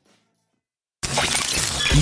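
About a second of silence, then a sudden, loud noisy sound effect, sharp at its start, opens the radio station's jingle.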